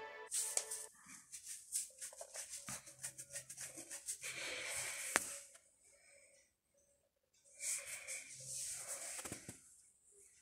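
Kitchen knife chopping a tomato on a plastic cutting board: a fast run of light taps for several seconds, a pause, then more cutting near the end.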